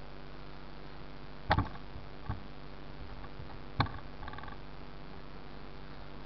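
Hand buffing a car hood's clear coat with a cloth and polishing compound, under a steady low hum. Two sharp knocks come about two seconds apart, with a smaller one between them.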